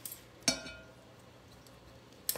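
A single light clink against a glass bowl about half a second in, ringing on briefly, as biscuit dough is handled in it.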